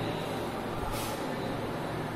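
Steady background noise with a low hum, and one short hiss about a second in.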